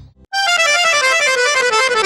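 Piano accordion starting a fast solo run a fraction of a second in: short, quick notes that step steadily downward in pitch.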